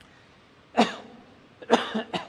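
A man coughing: one cough about three-quarters of a second in, and another about a second later.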